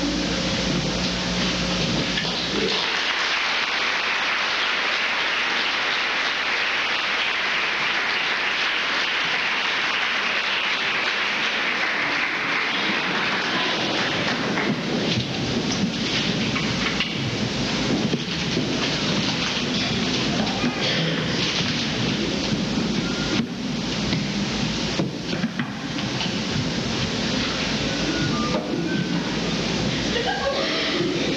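Audience applauding: a dense, steady clapping that swells about three seconds in and keeps going, growing rougher and lower in the second half.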